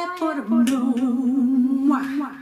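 A woman's voice humming a short unaccompanied melody, settling about half a second in onto one long held low note, with a sharp click near the start of the held note.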